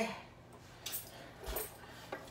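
A few faint, short clicks and a light rattle of plugs and cables being handled and pulled out of the back of a game console.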